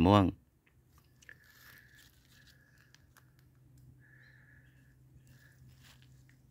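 A man's last word ends, then faint outdoor ambience: a high buzzing call comes and goes four times, each for under a second, over a low steady hum, with a few soft clicks.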